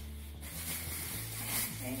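Aluminium foil crinkling and rustling as it is unwrapped, over background music with a steady low bass line.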